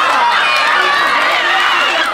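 A group of young people cheering and shouting excitedly, many high voices yelling over one another.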